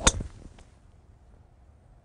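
Golf driver striking a teed golf ball at full swing: one sharp crack right at the start, with a brief ring after it.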